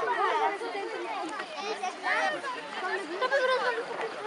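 A walking group of schoolchildren talking over one another: steady overlapping chatter of many voices with no single clear speaker.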